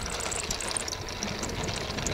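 E-flite P-47 RC model's electric motor spinning at low throttle as the plane rolls out on an asphalt runway after landing. A steady rumble with a dense crackle of small clicks runs under it.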